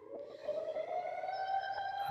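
Air-raid siren winding up, its pitch rising and then levelling off into a steady tone about one and a half seconds in.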